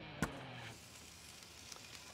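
One sharp click as the latch on a Komodo Kamado grill's lid is released, followed by a faint hiss. Background music fades out within the first half-second.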